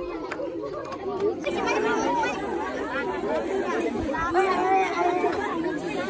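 A crowd of schoolchildren chattering, many voices overlapping, swelling louder about a second and a half in.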